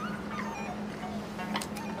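Quiet background music with a steady low note, over which faint, short, high gliding whines come and go; a couple of light clicks sound about three-quarters of the way through.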